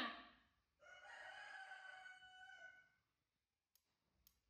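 A rooster crowing once in the background: one fairly faint, long, steady-pitched call of about two seconds that starts about a second in.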